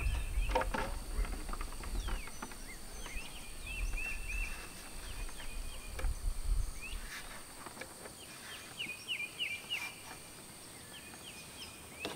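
Small birds chirping in short runs of quick repeated notes, with a few faint knocks as a plastic tail light housing is shifted against the RV wall. A low rumble under them fades out about seven seconds in.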